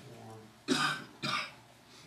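Two short coughs, about half a second apart, a little under a second in.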